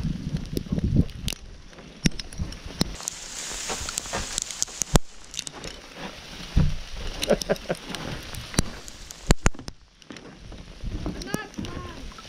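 Crunching and crackling of sleet-crusted snow underfoot: irregular sharp clicks over a low rumble, with a short laugh about seven seconds in.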